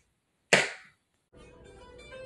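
A single sharp burst of noise about half a second in, fading within half a second, then soft plucked acoustic-guitar music starting near the end.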